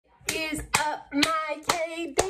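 Four sharp hand claps, about two a second, each followed by a short sung or voiced note.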